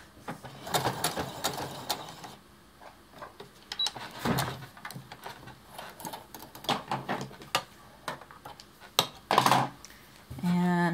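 Sewing machine with a walking foot stitching in a quick run of clicks for the first two seconds, then scattered clicks and fabric rustling as the hemmed towel is handled and drawn out from under the foot, with a louder rustle near the end.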